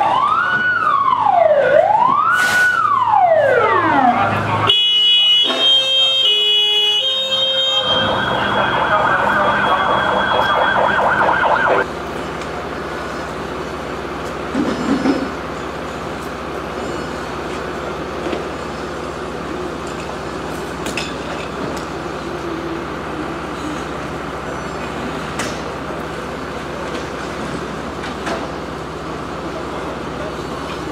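Fire engine siren cycling through its tones: two slow rising and falling wails, then a high-low two-tone alternation, then a fast pulsing yelp, cutting off suddenly about twelve seconds in. A truck engine runs steadily underneath and carries on after the siren stops.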